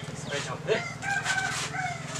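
Rooster crowing: one long, held call in the second half.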